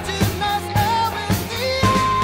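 Pop-rock song with a sung melody over a steady drum beat of about two hits a second.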